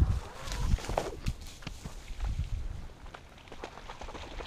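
Quick, irregular footsteps and rustling on dry grass, fading away over a few seconds.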